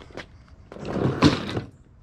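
A golf bag full of metal clubs being tipped over onto a concrete driveway, the clubs rattling and knocking together for about a second, starting a little under a second in.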